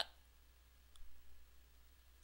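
Faint room tone in a pause between spoken words, with one soft click about halfway through.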